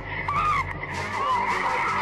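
Birds calling, a busy run of short squealing calls that glide up and down, over a low steady drone.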